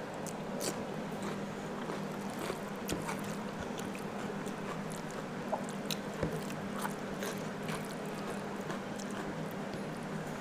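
Close-miked eating sounds: biting into a raw cucumber slice and chewing, with many small scattered mouth clicks and fingers mixing rice and curry on a plate. A steady low hum runs underneath.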